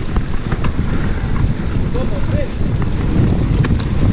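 Wind rumbling on a helmet-mounted action camera's microphone while mountain biking, with scattered clicks and knocks throughout.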